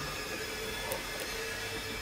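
A steady background hum with a faint held tone and no other distinct events.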